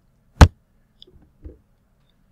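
A single sharp click about half a second in, followed by two faint soft sounds near the middle, in an otherwise silent stretch.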